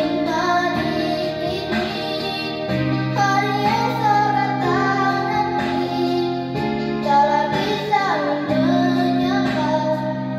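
A young girl singing a melody into a microphone over a backing track of held chords.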